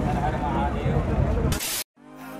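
A person laughing among voices, over a heavy low rumble and hiss of noise on the microphone. It all cuts off abruptly near the end.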